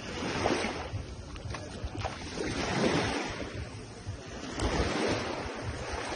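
Small waves washing in over the sand at the shoreline, swelling and fading, with wind buffeting the microphone.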